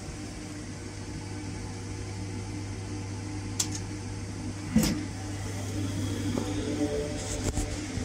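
HP ProCurve modular PoE network switch chassis powering up. A steady hum runs under a sharp knock a little past the middle, then the cooling fans come up, adding steady tones and getting louder near the end.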